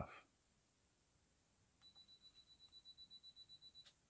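Canon DSLR self-timer beeping quickly for about two seconds, a faint high-pitched pulsing beep, ending in the click of the shutter firing near the end as the long exposure starts.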